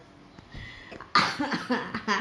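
A person's cough, starting suddenly about a second in and running on briefly into a voiced sound.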